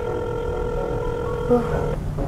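Telephone ringback tone: one steady held tone heard while a call rings unanswered.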